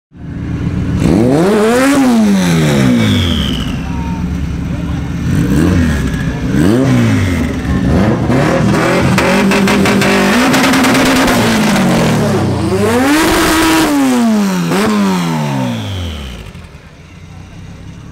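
Drag-race car engines revving hard, over and over: each rev climbs sharply in pitch and drops away, and twice the pitch holds level for a second or two before falling. The revving fades out near the end.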